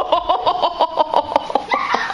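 A person laughing in a long, quick run of 'ha-ha' pulses, about seven a second, that stops just before the end.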